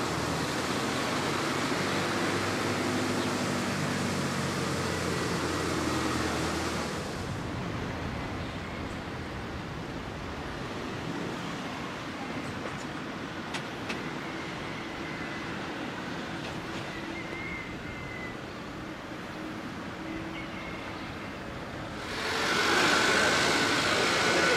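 Street ambience with a small car's engine running as it drives toward the camera. About seven seconds in it cuts to quieter open-air town ambience with a few faint high chirps and clicks. It grows louder again near the end.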